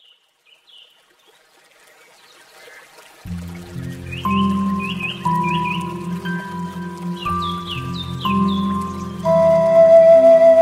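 Faint bird chirps, then slow ambient music comes in about three seconds in: a low held drone with long sustained melody notes. Bird chirps carry on above the music, which grows louder near the end.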